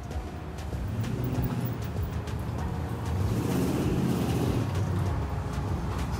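Street traffic beside a roadside taco stand: a steady low rumble of car engines, with a vehicle growing louder for a couple of seconds in the middle as it passes.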